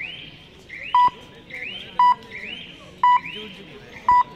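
Electronic beeping: a short, loud, single-pitched beep about once a second, three times, with a fainter rising electronic chirp sounding between the beeps.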